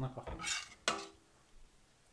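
Metal ladle clinking and scraping against the inside of a stainless steel soup pot as soup is scooped out. There are a few knocks in the first second, and the last one rings briefly.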